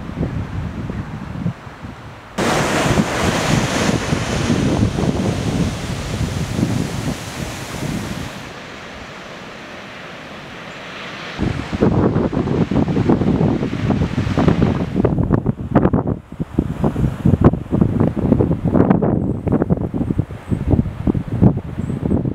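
Ocean surf and wind on an open coast, with wind buffeting the microphone. The noise jumps up sharply about two seconds in, settles to a softer hiss for a few seconds in the middle, then turns into gusty, uneven buffeting for the second half.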